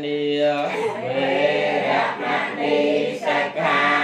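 A congregation of many voices chanting together in unison, a Buddhist devotional chant sung on level, held notes with a steady syllable rhythm.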